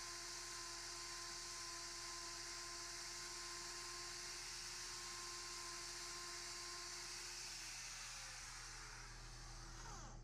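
Angle grinder with a hoof-trimming wheel running faintly, a steady motor whine over hiss. Near the end the whine falls in pitch and fades as the grinder winds down.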